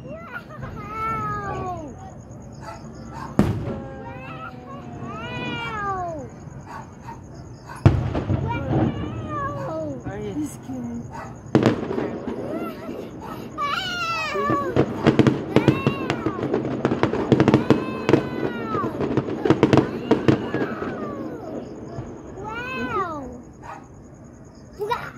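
Fireworks going off at a distance: single bangs a few seconds apart, the loudest about eight seconds in, then a dense crackling run through most of the second half. Repeated rising-and-falling cries sound over them throughout.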